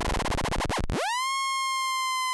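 Tiptop Audio ATX1 analog oscillator being frequency-modulated by a second ATX1 running as an LFO. It starts as a dense, clangorous tone under audio-rate FM. About a second in, the modulation is turned down: the pitch swoops up and settles into a steady, bright, buzzy tone that drifts slowly lower.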